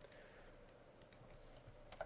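A few faint computer keyboard key clicks, including a Shift+End key press, over near-silent room tone.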